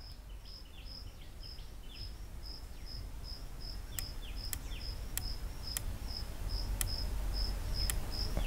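Faint, crisp clicks of a rifle scope's elevation turret being turned by hand, about six detents from about halfway through, to move the point of impact while zeroing. Under them, a cricket chirps steadily about two and a half times a second.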